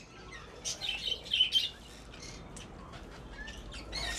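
Budgerigars chirping in short, scattered calls, busiest in the first couple of seconds and fainter after.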